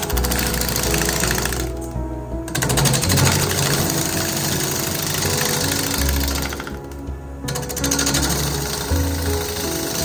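A lathe gouge cutting into a spinning wooden bowl blank, a fast, even rattle of ticks as the shavings come off, breaking off twice for about half a second. Music plays underneath.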